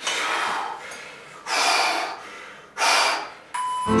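A man's forceful, heavy breaths under maximal strain: three loud gasping exhalations about a second and a half apart. About three and a half seconds in, a steady electronic beep starts.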